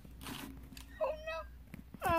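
A cat meowing once, about a second in, over the rustle of the phone being carried.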